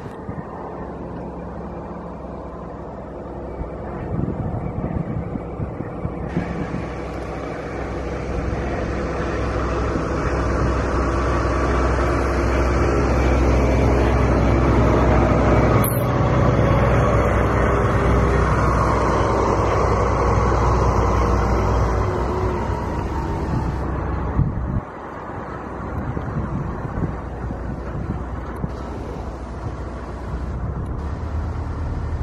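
Rumble of a nearby road vehicle passing, with wind on the microphone. It builds for several seconds, is loudest in the middle and drops off abruptly near the end. There is one sharp click midway.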